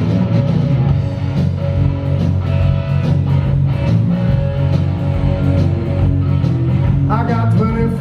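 Live rock band playing: electric guitar over bass guitar and drums, loud and continuous.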